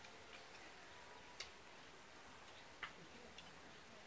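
Near silence with a couple of light, sharp clicks about a second and a half apart: chopsticks and utensils tapping against bowls and the grill pan during a meal.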